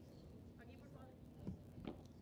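Near-silent padel court between points, with faint distant voices and two soft thumps near the end.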